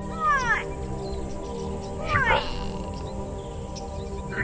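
Two short animal cries, each falling in pitch, about two seconds apart, over a steady background music drone.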